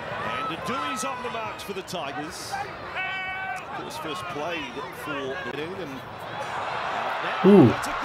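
Rugby league TV highlights audio: a commentator talking over stadium crowd noise. The crowd's noise swells into cheering about six seconds in, and near the end a man lets out a short 'ooh'.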